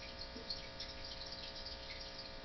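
Faint steady hum of several tones, with a couple of faint soft ticks.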